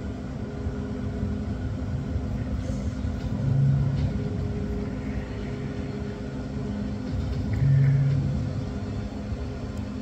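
Steady low background rumble, with a louder low hum swelling briefly about three and a half seconds in and again near eight seconds.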